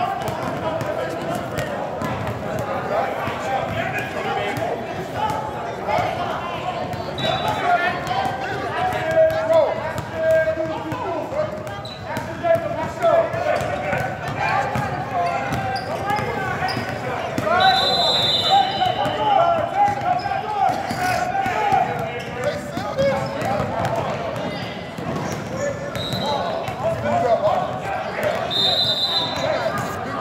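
Basketball being dribbled on an indoor court, with a few short high sneaker squeaks, over continuous crowd and bench chatter echoing in a large gym.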